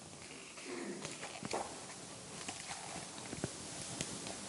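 Quiet room with scattered light taps and paper rustles as the page of a picture book is turned.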